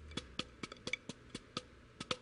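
Drumsticks striking a rubber practice pad in a steady pattern, about four strokes a second with lighter notes between.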